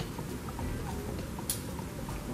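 A stemmed wine glass set down on a cloth-covered table: a single light click about one and a half seconds in, over low room noise.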